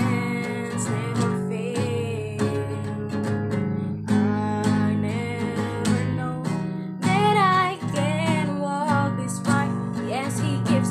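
A woman singing a slow song over a strummed acoustic guitar, her voice wavering in pitch on held notes about seven seconds in.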